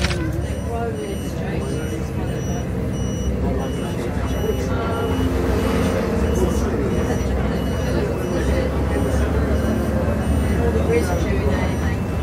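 Bus engine and road rumble heard from inside the passenger cabin while driving, steady throughout, with indistinct passenger voices in the background.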